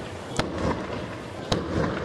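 Aerial fireworks bursting: two sharp bangs about a second apart, over a continuous crackle of burning stars.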